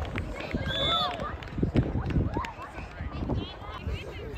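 Children's voices calling and shouting across a soccer field in short, high-pitched cries, over scattered low thumps and rumble.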